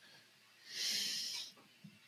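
One audible breath into a close podcast microphone, a hissy exhale about a second long that begins a little over half a second in.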